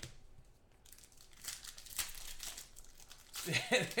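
Foil trading-card pack being torn open and crinkled by hand: a crackling run of tearing and crinkling from about a second in. A man's voice starts near the end.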